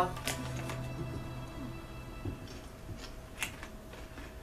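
A few sharp crackles, mostly in the first second, from ruffled potato chips being bitten and their bag handled, over faint background music.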